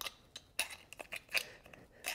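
A few light, irregular metal clicks and taps: a hoof pick knocking against a horse's sliding-plate shoe.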